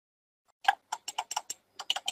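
A run of about ten sharp computer clicks, mouse or keys, in quick, uneven succession, starting about half a second in.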